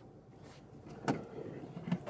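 Quiet car interior with one short, sharp click about a second in.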